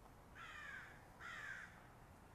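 An animal calling twice: two harsh calls, each about half a second long and falling in pitch.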